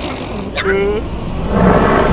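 Cartoon larva character vocalising: a short rising yelp about half a second in, then a held note. A loud rumbling noise swells up near the end.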